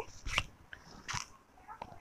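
Soft rustling with a few short crinkles as a silk saree and a price card are handled.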